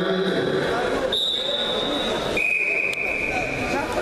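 Wrestling referee's whistle: two long steady blasts, the first higher and the second lower, starting the bout, over the chatter of spectators in the hall.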